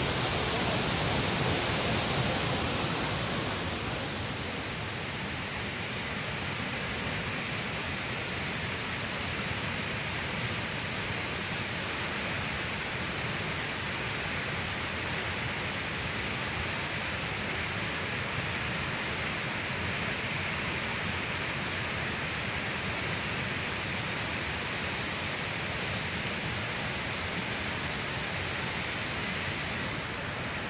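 High-volume waterfall, several streams plunging into a churning pool: a steady, even rush of falling water, slightly softer and duller from about four seconds in.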